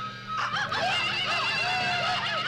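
Film soundtrack music: a wavering high melody comes in about half a second in over a steady low drone.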